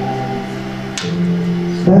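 Soft background music of held, sustained chords, changing to a new chord about a second in. A man's voice through a microphone comes in right at the end.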